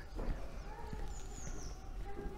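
Faint voices of children playing, with a high call about halfway through, and light footsteps.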